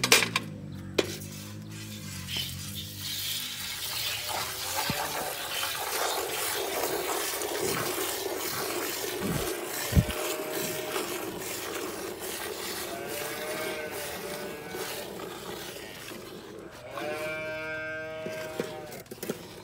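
A water buffalo being hand-milked into a steel bucket: jets of milk hissing and splashing into the frothy milk in a steady run. Near the end, an animal calls.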